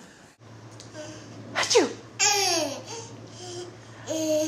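A baby giving two short, high-pitched squeals about halfway through, each falling steeply in pitch.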